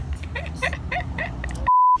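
Short bursts of laughing voices over a low hum. Near the end, all other sound cuts out for a brief, loud, pure beep at about 1 kHz: a censor-style bleep edited into the soundtrack.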